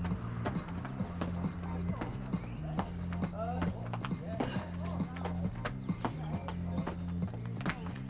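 Trainers landing on paving in a quick, even rhythm of about two to three footfalls a second as a person does oblique jacks, over background music with a steady repeating bass line.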